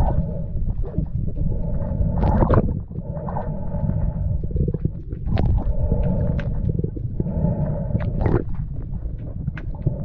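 Underwater sound picked up by a GoPro in its waterproof housing: a steady low rumble with a faint hum that comes and goes, broken by a few sharp clicks and knocks.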